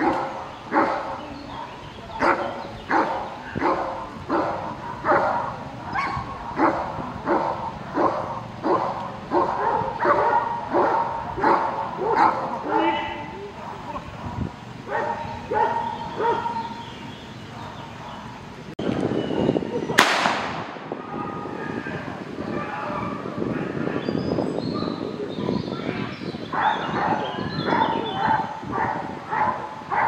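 Belgian Malinois barking steadily and rhythmically at a helper in a bite suit, about one and a half barks a second, the hold-and-bark of a protection exam. About two-thirds through, a single sharp crack cuts in, and the barking picks up again near the end.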